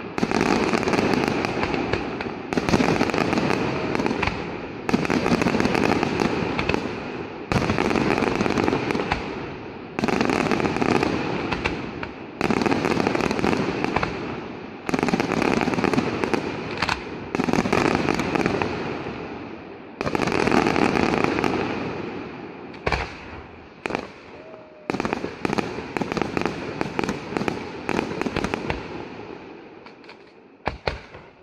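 Fireworks display: a run of salvos fired about every two and a half seconds, each starting suddenly with a bang and trailing off in a long hiss and crackle. After about two-thirds of the way in, shorter scattered bangs and pops follow as the sequence dies down.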